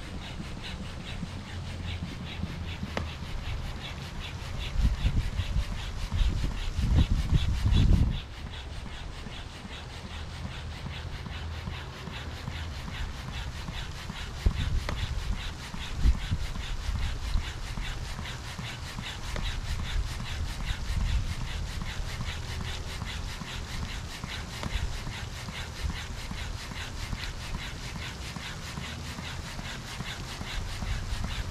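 Double-action hand pump, set to its double chamber, worked in repeated strokes to push air through a hose into an inflatable ring. A low rumble runs underneath, loudest between about four and eight seconds in.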